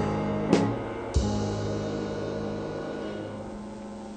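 Band music with guitar and drums: two sharp drum hits about half a second and a second in, then a held chord that slowly fades away.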